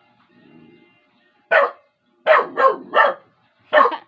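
A small dog barking in short, sharp barks: one bark about a second and a half in, three quick barks in a row, then one more near the end.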